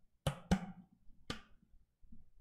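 Three sharp knocks from a drink container being picked up and handled on a desk: two close together about a quarter second in, a third just over a second in.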